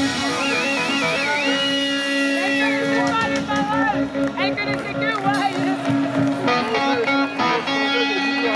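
Punk band playing live through a loud PA: electric guitars ring on a held chord, with a wavering high note that then holds steady and bends down. From about three seconds in, voices come in over the ringing guitars.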